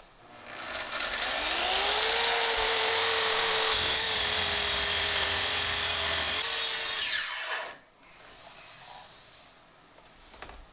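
Kreg plunge track saw started up and spun up to speed, then running steadily under load as it is pushed through the end of a wooden river-table slab. About seven seconds in it is switched off and its pitch falls quickly as the blade winds down.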